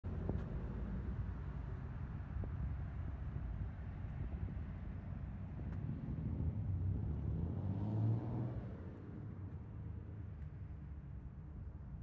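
Outdoor street traffic: a steady low rumble of road traffic that builds to a vehicle passing close about eight seconds in, then settles back to a quieter rumble.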